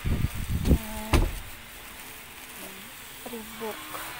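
Handling noise on a phone microphone: a few dull thumps and rubbing in the first second or so, ending in a sharp click, as plastic-wrapped shirts are pushed through by hand. Afterwards a steady, lower background of faint voices.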